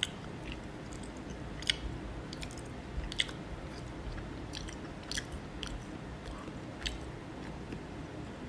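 A person eating from a plastic tub with wooden chopsticks: quiet chewing, with about eight irregular sharp clicks from the chopsticks and mouth.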